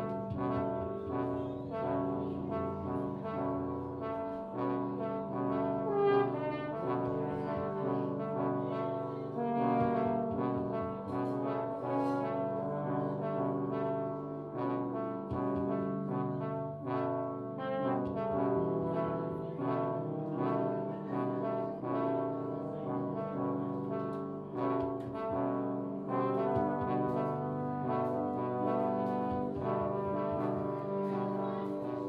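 Valve trombone playing a continuous free-improvised line of changing notes, over steady low sustained tones that hold on beneath it.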